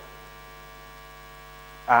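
Steady electrical mains hum in the sound system, a constant buzz made of several even tones, with a short spoken 'uh' at the very end.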